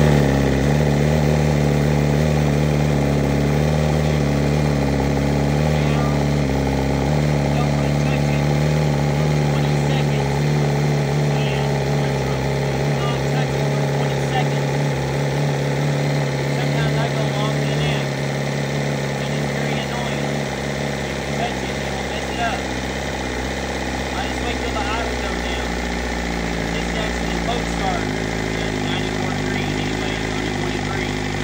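2023 BMW S1000RR's inline-four engine idling in neutral just after starting, steady throughout, settling a little lower and quieter after about 18 seconds.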